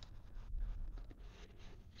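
A quiet pause: faint room hiss with soft scratchy rustling and a low bump about half a second in.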